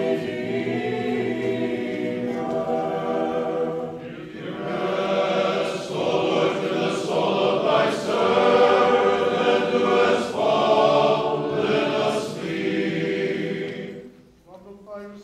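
Unaccompanied choir singing a hymn of the Orthodox burial service in sustained chordal harmony; the singing dips briefly about four seconds in, then swells again.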